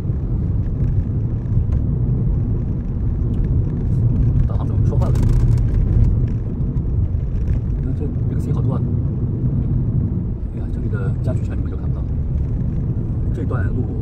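Cabin noise of a moving Nissan car: a steady low rumble of engine and tyres on the road, with a brief rushing hiss about five seconds in.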